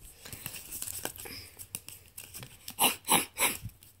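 Handling noise as a cardboard cutout and a plastic toy figure are shuffled against a bedspread: faint scattered rustles and clicks, then three quick loud rustles about three seconds in.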